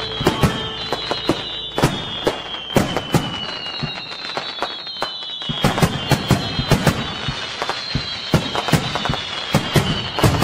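Fireworks going off: an irregular string of sharp bangs and crackles, several a second, with high whistles that slowly fall in pitch.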